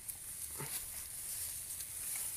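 Quiet open-field ambience: a steady, faint, high-pitched hiss with a soft short sound a little over half a second in.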